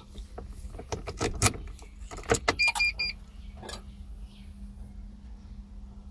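Car key going into the ignition and being turned, several sharp clicks, then three short electronic beeps as the ignition comes on and a steady low hum from the car's electrics.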